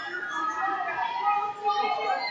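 Sports hall background: overlapping distant voices with music playing underneath, several pitches held steady for half a second or more.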